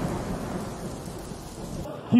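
The noisy tail of a cinematic title intro's sound effect, a hiss and rumble that fades away steadily over about two seconds once the intro music cuts off.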